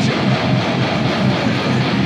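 Electric guitar playing a low, chugging heavy-metal riff in a steady rhythm.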